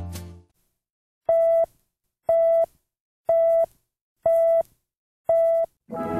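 Five short electronic beeps, one a second, each a single steady mid-pitched tone, after the last of a music track fades out. New music starts right after the fifth beep.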